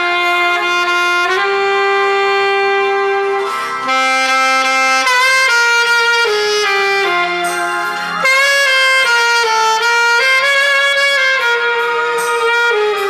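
Alto saxophone, a Selmer Series III with a Vandoren V16 mouthpiece, playing a slow ballad melody in long held notes that change pitch every second or two.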